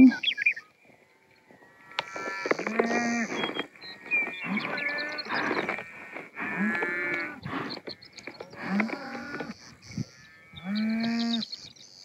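Cattle mooing: about six drawn-out calls from the herd of Hereford and Angus cows and calves being gathered, with short pauses between them.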